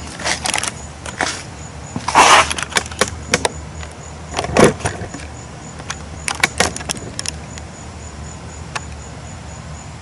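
Handling noise close to the microphone: scattered clicks, knocks and rustles, with two louder rustles about two and four and a half seconds in.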